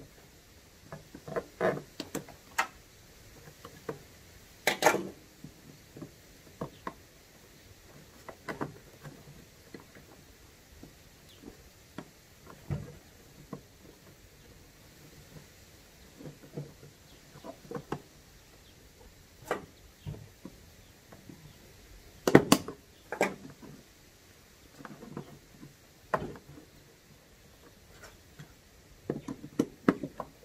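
Irregular small clicks, taps and knocks of a hand tool working at the seat-sensor fitting in a riding mower's plastic fender, with sharper knocks about five seconds in and again around twenty-two seconds.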